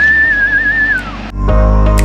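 A single long whistled note that slides up, holds with a slight wobble and falls away after about a second. Loud background music with a steady bass starts about a second and a half in.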